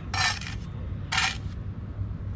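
Two short metallic scrapes from a steel brick trowel: one of about half a second near the start, and a shorter one just after a second in.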